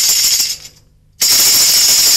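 Rapid, continuous rattling and clattering, broken by a short near-silent gap about a second in, after which it resumes at the same level.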